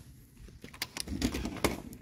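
Handling noise: an irregular run of clicks and rustles, with a sharper click near the end.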